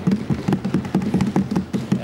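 Many hands thumping on wooden desks in a rapid, irregular patter, the way assembly members show approval of a speaker's point.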